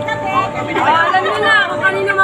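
Several people chatting at once, their voices overlapping into a loud, unbroken stream of conversation.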